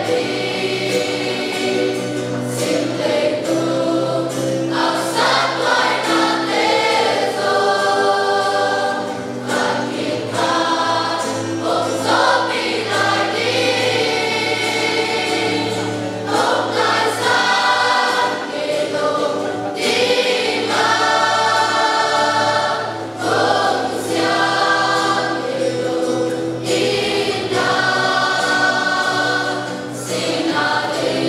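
Church choir of young women and men singing together in held, sustained notes, over steady low sustained tones underneath.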